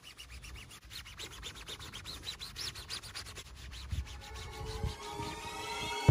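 Gloved hand rubbing a car tyre's rubber sidewall in quick, even strokes, several a second. Music swells in near the end.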